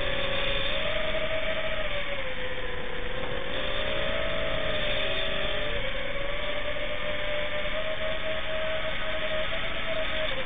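An FPV quadcopter's electric motors and propellers whine steadily in flight, the pitch wavering slightly up and down with the throttle, over a constant rush of propeller wash.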